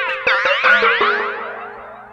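Synth pluck notes with heavy echo, the echoes run through a flanger set to very high feedback. It gives the ringy up-and-down sweeping sound, which trails off after a quick run of notes in the first second.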